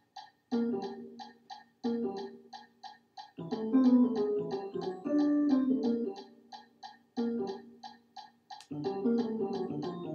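Sampled instrument playback of a jazz arrangement from music notation software: short chord hits and moving lines over a steady high ticking about four times a second. The chords thin out about two-thirds of the way through and come back in near the end.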